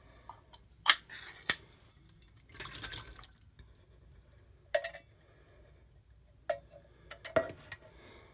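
Canned fruit cocktail in syrup poured from a tin can into a stainless steel mixing bowl: sharp metal clinks of the can against the bowl, a wet splash of fruit and syrup about two and a half seconds in, then a few more clinks near the end.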